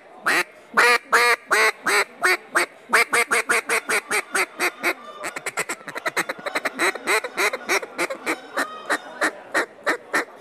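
Rich-N-Tone Daisy Cutter duck call blown by hand: a string of loud, raspy quacks, at first about three a second, quickening into a fast run of short notes about halfway through, then easing off again.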